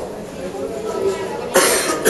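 Low murmur of people talking in the background, broken near the end by one loud, short cough.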